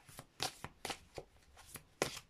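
Oracle cards being shuffled and handled in the hands, a quick, uneven run of short flicks and taps.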